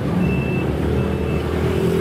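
A motor vehicle's engine running steadily, with a short high-pitched electronic beep sounding twice at an even spacing, like a reversing alarm.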